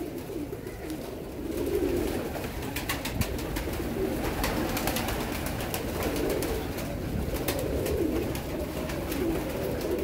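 Caged domestic pigeons cooing, a low coo repeating every second or so, with scattered light clicks of small objects being handled.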